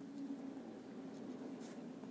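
Ballpoint pen writing on paper: faint scratching of letter strokes, with a brief sharper scratch near the end, over a steady low hum.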